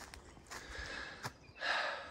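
Footsteps on a dry forest floor of dead leaves and twigs: a few faint clicks, then a louder rustling step near the end.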